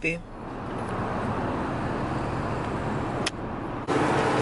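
Steady road noise inside a car's cabin, ended by a sharp click a little over three seconds in.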